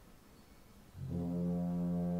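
Opera orchestra's low brass entering about a second in on a loud, steady held note, after a quiet pause.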